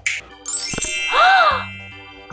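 A magical chime-and-sparkle transition sound effect: a bright ding and shimmer about half a second in, with a short whistle-like tone that rises and falls, over light background music.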